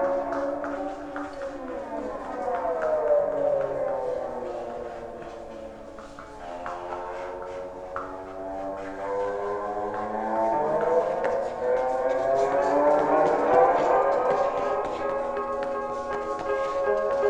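Amplified electric guitar played in free improvisation: several sustained notes slide slowly downward in pitch over a couple of seconds, hold, then swell and waver upward again near the end, like a siren.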